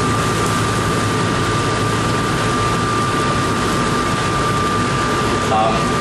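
Steady roar of a commercial gas wok range and kitchen fans, with a thin, steady whine over it.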